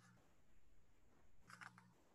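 Near silence: faint room tone, with a few faint short ticks near the end.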